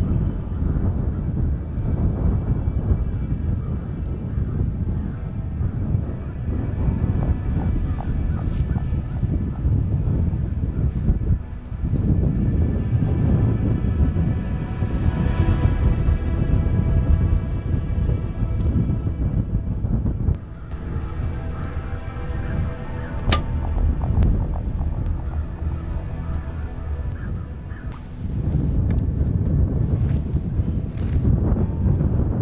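Wind buffeting the microphone in a steady low rumble, under background music with long held tones. A single sharp click comes about two-thirds of the way in.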